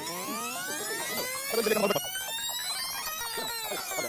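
Synthesized transition sound effect: many tones glide together, rising in pitch through the first half and falling back through the second, with a louder swell about a second and a half in.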